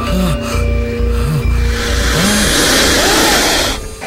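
Dramatic TV-serial background score: low pulsing tones and short swooping notes, building in the second half into a dense, rising noise swell that cuts off just before the end.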